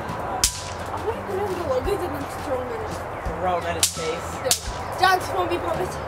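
Bang snaps (snap pops) thrown onto concrete, cracking sharply three times: once about half a second in, and twice close together near four seconds.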